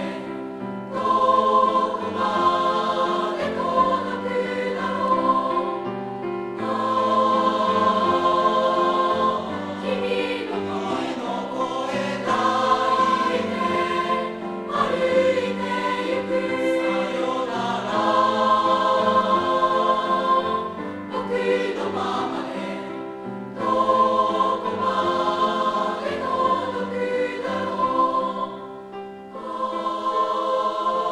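Junior high school mixed choir, girls' and boys' voices, singing a choral piece in parts with piano accompaniment, in long sustained phrases with short breaths between them.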